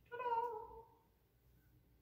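A single high vocal call, falling slightly in pitch and dying away within about a second.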